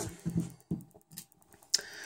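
A few faint, light clicks of a precision screwdriver on the screws of a rugged power bank's metal cover, then a short hiss near the end.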